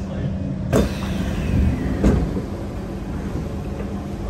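Doors of a stopped metro train and the platform screen doors opening: a sudden clunk about a second in, then a falling whine as they slide open, and another knock a second later, over the train's steady hum.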